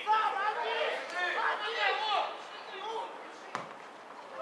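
Raised voices calling out across a football pitch, in bursts for about three seconds. Then a single sharp thud, like a ball being kicked, about three and a half seconds in.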